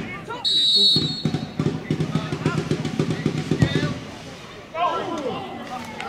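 A referee's whistle gives one short blast about half a second in, followed by a rapid run of low knocks lasting about two seconds.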